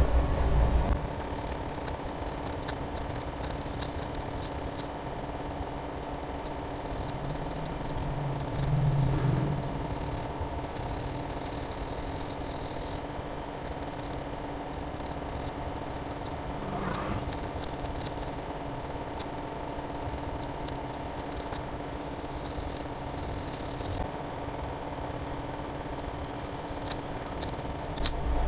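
Faint scraping and light ticking of a fingertip rubbing solder paste into a metal BGA reballing stencil, over a steady electrical hum. This is the paste-filling stage of reballing a phone CPU.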